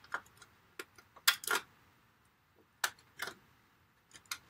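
A small clear acetate treat box being folded and pressed together by hand: about six sharp plastic clicks and crackles, spaced irregularly, the loudest a little over a second in.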